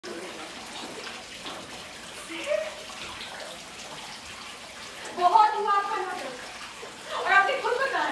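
Steady rushing background noise with faint voices, then a woman's voice speaking loudly in two stretches, about five seconds in and again near the end.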